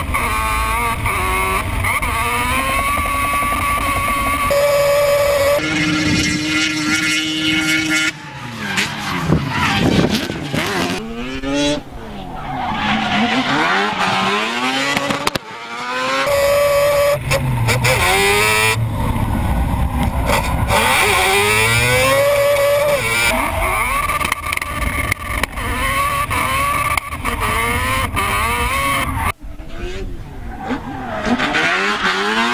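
Mazda RX-7 drift car's engine revving hard, rising and falling again and again through slides, over tyre squeal. The sound cuts abruptly several times from one stretch of driving to the next.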